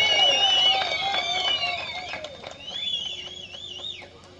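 Rally crowd applauding with several shrill, wavering whistles over the clapping, dying down toward the end.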